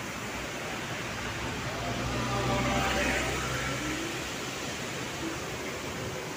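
A motor vehicle passes by, its engine hum swelling to a peak about three seconds in and fading over a couple of seconds, over a steady rushing background.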